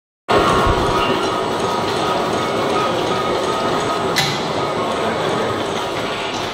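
Chocolate wrapping machine running: a steady mechanical clatter with a faint whine, and one sharp click about four seconds in.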